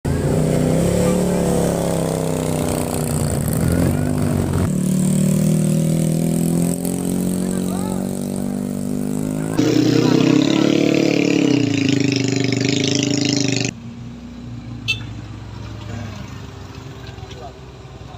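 Motorcycle and car engines labouring up a steep hairpin climb, revving and changing pitch under load, in several short clips that cut off abruptly one after another. The last clip is quieter, with a single sharp click in it.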